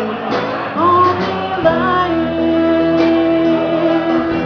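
Live song with ukulele strumming and a singing voice that slides up into a long held note.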